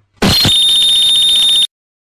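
Loud electronic buzzer-like alarm tone: a harsh, high steady tone with a rapid flutter that starts abruptly after a moment of dead silence, holds about a second and a half, then cuts off suddenly.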